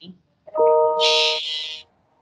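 A short chime-like tone of several steady pitches sounding together, held for just over a second, with a hiss over its middle.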